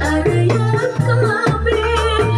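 Koplo dangdut music: hand-played kendang drums keeping a driving beat with deep low strokes, under a wavering sung melody.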